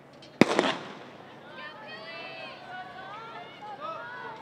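Starting pistol firing to start a 400 m hurdles race: one sharp shot about half a second in, with a short echo after it.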